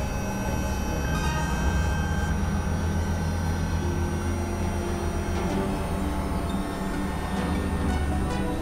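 Experimental electronic drone music from synthesizers: a dense, steady low drone under several held high tones that enter and drop out one by one.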